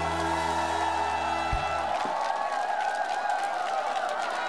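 A live band holds its closing chord and ends it with a sharp drum hit about a second and a half in; after that a large audience keeps cheering and clapping.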